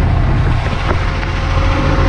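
Steady low rumble of a heavy diesel engine idling close by.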